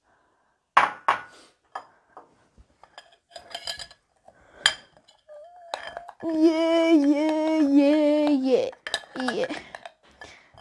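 A metal spoon clinks and scrapes against a glass bowl and glassware while whipped dalgona coffee mixture (instant coffee, sugar and water) is stirred. In the second half a voice-like hum is held for a couple of seconds and is the loudest sound.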